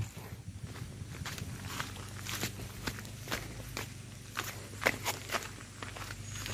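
Footsteps on a steep, loose stone path: a person walking uphill, each step a short scuff or click of stones, about two a second.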